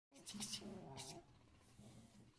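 A person's voice: one short, soft vocal sound lasting about a second near the start, followed by faint room tone.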